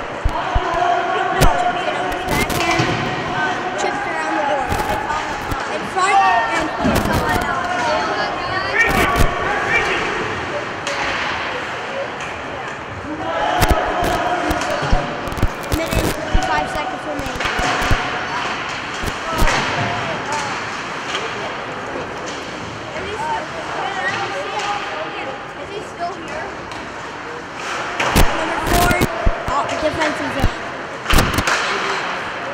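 Ice hockey play echoing in a rink: repeated sharp knocks and slams of the puck and sticks against the ice and boards, scattered through, with players and spectators shouting over them.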